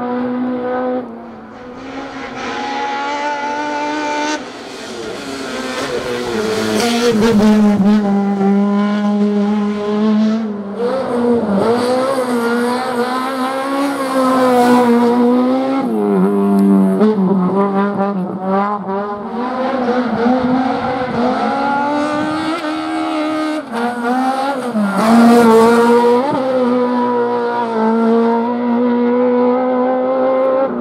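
Autobianchi A112 hillclimb car's four-cylinder engine revving hard, its pitch climbing and then dropping again and again as the driver shifts gears and lifts off for the bends.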